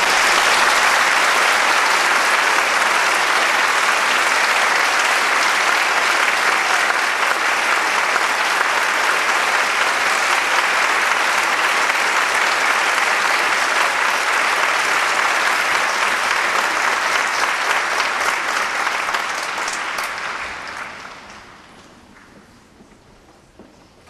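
A large audience applauding, loud and steady, dying away over the last couple of seconds.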